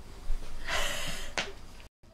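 A woman's sharp, audible breath lasting about half a second, followed by a short click, like a gasp taken between lines; the sound then cuts out completely just before the end, at an edit.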